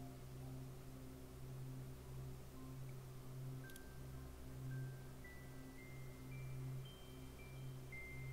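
Quiet background music: short bell-like melody notes at changing pitches over a low, pulsing bass.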